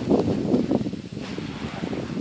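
Wind buffeting the microphone in a blizzard: an unsteady, gusting low rumble, strongest in the first second.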